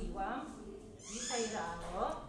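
A person's voice on stage: short speech-like sounds, then a longer vocal sound falling in pitch in the second half.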